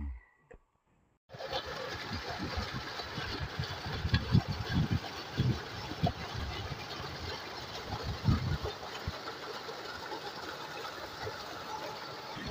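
An irrigation tubewell pumping: water gushing from the outlet pipe into a concrete tank, over the steady mechanical run of the pump. The sound starts suddenly about a second in, after a moment of near silence.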